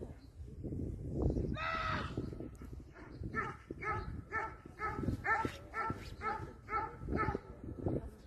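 Dog barking in a rapid, even series of about three barks a second, after a single drawn-out higher-pitched whine or yelp.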